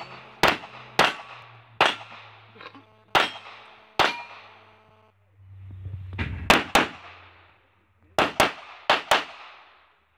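Pistol shots fired during an action-shooting stage: about a dozen sharp cracks, each with a short echoing tail. They come in uneven singles and quick pairs, with a pause of about two seconds midway.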